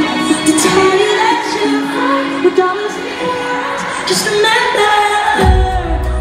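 Live pop concert music with singing over the band. Near the end a deep, heavy bass comes in.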